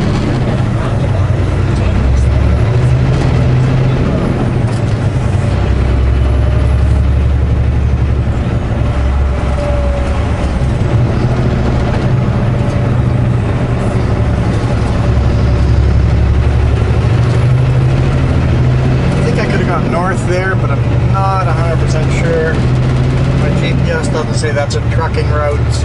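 Semi truck's diesel engine heard from inside the cab, a steady low drone under load that rises and falls in pitch and level several times as the truck pulls through a roundabout and gets back up to speed.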